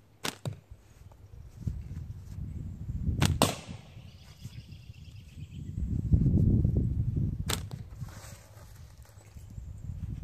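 Rubber-tube slingshot shooting 3/8-inch ammo at cans in quick succession: sharp snaps, a pair just after the start, another pair about three seconds in followed by a brief metallic ringing as a can is hit, and a single snap about seven and a half seconds in. A louder low rumble comes around six to seven seconds in.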